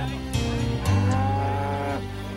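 A cow mooing: one long, low call that begins about halfway through.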